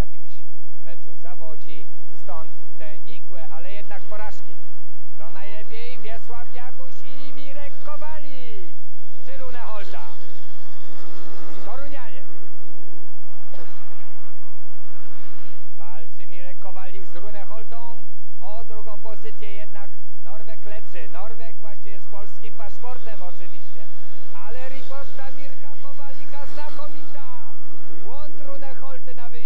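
A pack of speedway motorcycles, 500 cc single-cylinder methanol engines, revving at the start and then running flat out around the track, the pitch rising and falling with the throttle.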